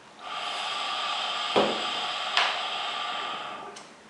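Hookah drawn on through its hose, the water in the base bubbling steadily for about three and a half seconds, with two short louder gurgles partway through.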